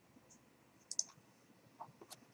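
Faint computer mouse clicking: a quick pair of clicks about a second in, with a few fainter ticks around them.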